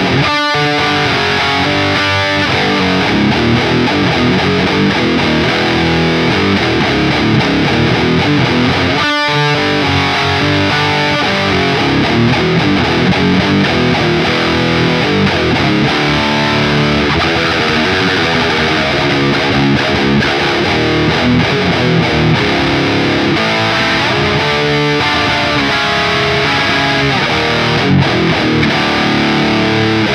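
High-gain distorted electric guitar, a Solar guitar with an EMG 81 pickup pushed by an Earthquaker Plumes overdrive into a 1998 two-channel Mesa/Boogie Dual Rectifier with EL34 tubes, playing heavy chugging riffs. It is recorded direct through a Two Notes Torpedo Captor load box with a cabinet impulse response instead of a speaker cab, with no EQ. The playing breaks off briefly about half a second in and again about nine seconds in.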